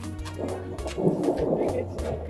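A rumble of thunder that swells about half a second in and fades near the end, over background music with a steady bass line.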